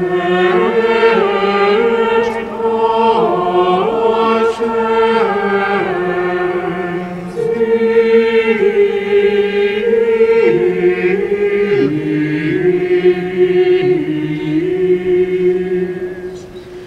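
A mixed choir of men's and women's voices singing a slow hymn in sustained chords that move step by step. The phrase breaks briefly about seven seconds in and ends near the close.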